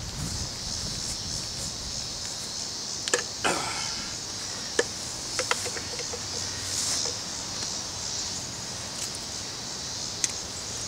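Steady high chirring of insects in grass, with a few light clicks and knocks from handling the Maytag 92 engine and its flywheel; the sharpest click comes about five seconds in, followed by a quick run of faint ticks.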